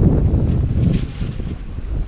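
Wind buffeting the microphone: a loud, rough low rumble that eases off in the second half.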